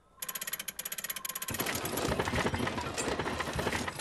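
Cartoon sound effect of a wind-up gramophone's hand crank being wound: a fast, even run of ratcheting clicks. About one and a half seconds in it turns into a louder, dense mechanical rattle.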